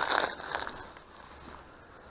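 A plastic rubbish sack rustling and crinkling in a gloved hand, loudest right at the start and fading within about a second to faint rustling.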